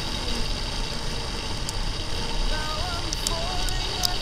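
Steady wind rush and tyre noise from a motorcycle riding on a wet road, with a song's sung melody playing over it.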